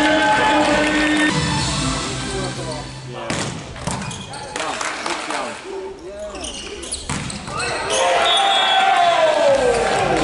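Indoor volleyball rally: sharp hits of the ball in the quieter middle stretch, a cluster about three seconds in and a last hit about seven seconds in. Around them are arena music and crowd voices, loud at the start and swelling again after the point, with a falling tone near the end.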